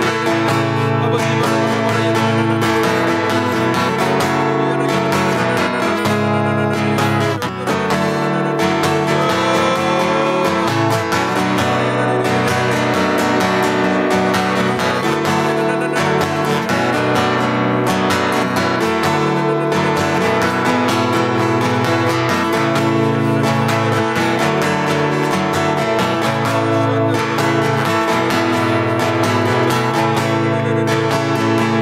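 Acoustic guitar strummed steadily in sustained chords, with one brief dip in loudness about seven seconds in.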